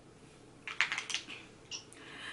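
Handling noise of a kabuki makeup brush: a quick run of light clicks and scratchy rustles starting just over half a second in, then two brief ones near the end.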